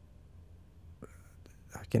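A pause in speech close to a condenser microphone: faint steady low room hum, a small click about a second in, then soft breath and mouth sounds before a man's voice starts just at the end.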